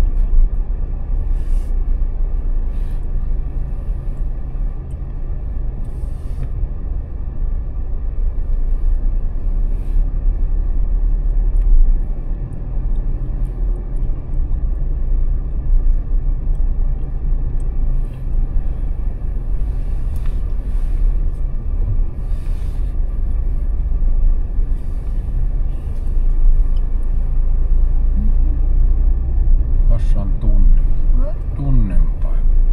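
A car driving slowly over a concrete parking-garage floor: a steady low rumble of engine and tyres.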